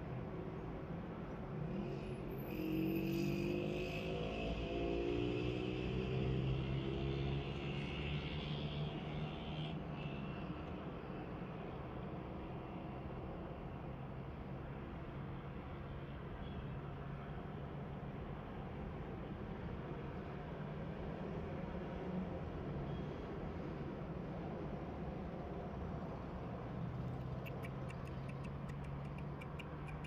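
An engine running steadily with a low hum. It grows louder from about two to ten seconds in, where a higher whine rises and falls in pitch, then settles back. Faint regular ticking comes in near the end.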